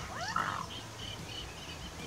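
A short rising bird call about half a second in, over faint, repeated high chirps of small birds.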